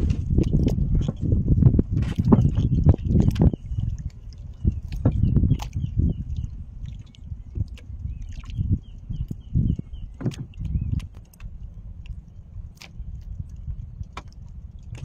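Rumbling wind noise and water sounds around a small wooden boat, with scattered knocks and clicks from the hull and the handline being worked. There is a faint high chirping in the middle, and the rumble settles to a steadier low hum in the last few seconds.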